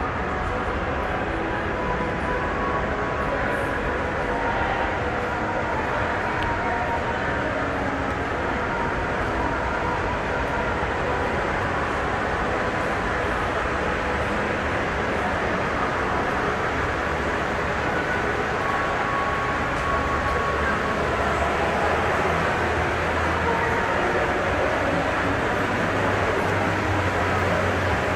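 Steady background noise of a large, busy indoor shopping arcade: a constant din of distant voices and footsteps blending with the hall's hum.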